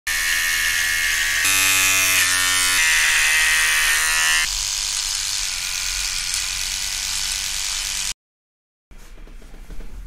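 Electric hair clipper buzzing steadily, its pitch changing abruptly a few times between edited shots. About halfway through, a smaller, quieter eyebrow trimmer buzz takes over. The sound cuts out suddenly about eight seconds in.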